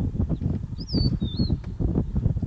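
Wind buffeting the microphone in irregular low gusts, with a bird's short whistled call of two or three quick up-and-down notes about a second in.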